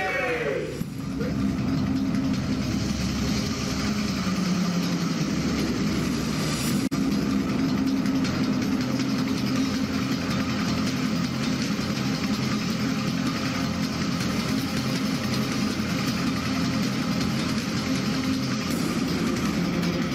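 Steady, loud ambient noise with a low, engine-like hum and indistinct voices underneath, unchanging throughout.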